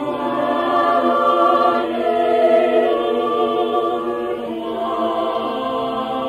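Choir singing slow, sustained chords that change every second or so, the recording dull with little treble.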